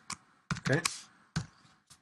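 A few separate keystrokes on a computer keyboard as code is typed.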